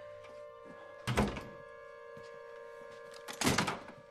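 Two heavy thuds of a house door banging, about two and a half seconds apart, over a held music chord.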